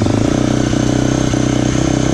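Brand-new 2021 Husqvarna FX350's single-cylinder four-stroke engine idling steadily, seconds after its first start-up.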